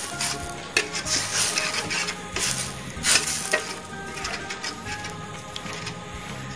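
A ladle scraping around a stainless steel pan in repeated strokes, stirring coconut milk and red curry paste that sizzles gently as it cooks down to split the oil from the coconut milk.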